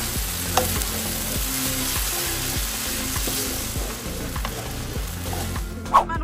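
Rice vermicelli and shredded vegetables sizzling in a frying pan while being stirred and tossed with a wooden spatula.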